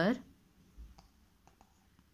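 The tail of a spoken word, then a few faint clicks and a soft low thump: handling noise from the hand-held camera moving over the textbook.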